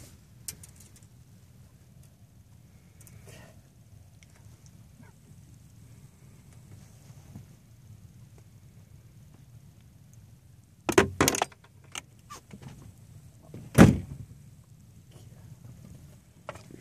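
A low steady rumble, broken about eleven seconds in by a quick cluster of sharp knocks, and about three seconds later by a single heavier thump, the loudest sound.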